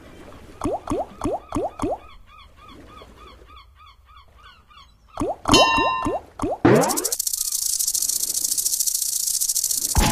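Big Bass Splash video slot game sound effects: two runs of short falling tones as the reels stop, with faint chirping between them. Near the end a rising sweep gives way to a loud, fast, rattling hiss that lasts the last three seconds.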